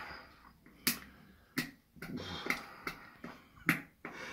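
Sharp plastic clicks from a Müllermilch bottle's cap being picked and pried at with the fingers, three clear clicks spread over a few seconds among softer handling noise: the cap is hard to get open.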